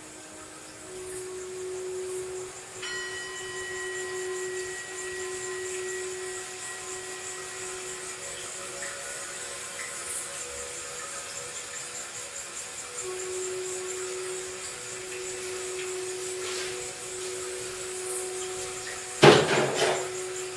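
Ambient music of long, held synth-like notes changing slowly. Near the end there is a loud, brief clatter.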